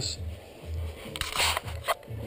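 A short scraping rustle from just after a second in until near the end, as the wooden bee box and its lid are handled.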